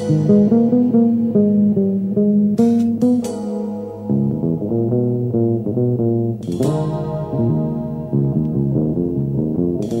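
Jazz-rock fusion instrumental: a fast run of plucked notes over bass guitar, punctuated by cymbal crashes about two and a half, three and six and a half seconds in and again at the very end.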